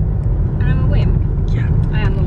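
Steady low rumble of road and engine noise inside a moving car's cabin, with a woman's voice coming in briefly partway through.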